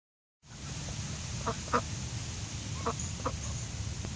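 Mallard ducks giving four short, soft quacks, two close together and then two more about a second later, over a steady low rumble.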